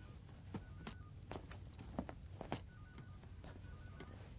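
Faint electronic beeping in short repeated pips, with light clicks and knocks scattered between them.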